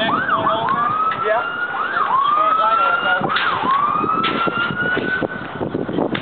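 Emergency vehicle siren sounding, a quick up-and-down yelp followed by a slow rising wail, three times over.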